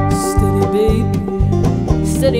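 Live folk band playing an instrumental passage between sung lines: banjo and electric guitar over a drum kit, with a cymbal wash just after the start and keyboard sustaining notes underneath.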